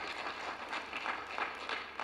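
Scattered applause from an audience: a few people clapping irregularly.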